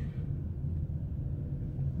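Steady low hum and rumble of a moving car's engine and road noise, heard from inside the cabin.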